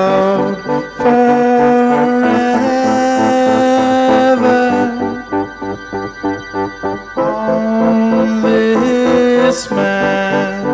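Keyboard-led lo-fi pop music: held chords from an electric piano and sampler, breaking into shorter repeated notes midway before the held chords return.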